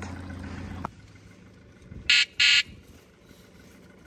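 The steady hum of an idling Yamaha 115 outboard stops abruptly about a second in. Then come two short, high-pitched electronic beeps from the boat's ignition warning buzzer, the usual key-switch beep of an outboard's control system.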